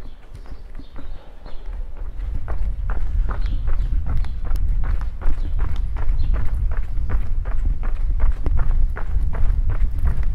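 Footsteps of a person walking on a paved street, about two steps a second, over a steady low rumble.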